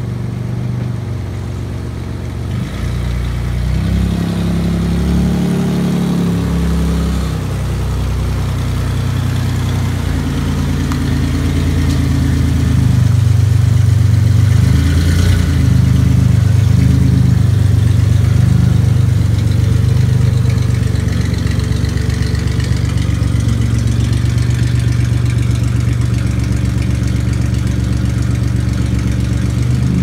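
Oldsmobile Alero's engine running at low speed as the car is driven slowly, louder as it passes close by around the middle, with small shifts in engine pitch.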